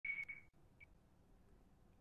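A short, high steady tone lasting about half a second, then a brief blip of the same pitch just under a second in, followed by faint room hiss.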